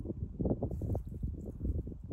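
Wind buffeting the microphone: a low, uneven rumble.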